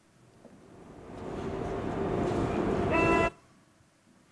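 Recording of a train, played back over loudspeakers. It starts from nothing and grows in a crescendo with a glissando toward the high frequencies. Near the end a pitched, horn-like tone comes in, and the sound cuts off suddenly about three seconds in.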